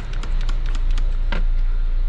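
Trigger spray bottle squirting leak-detection solution onto freshly brazed copper refrigerant joints of a pressurised system, checking them for leaks: a run of small clicks and a short spray burst a little past a second in, over a steady low hum.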